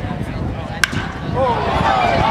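A wooden baseball bat cracking against a pitched ball, a single sharp crack about a second in, hit for a home run. A ballpark crowd starts cheering near the end.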